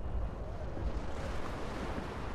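A low, steady rumble, with a faint hiss that swells about a second in.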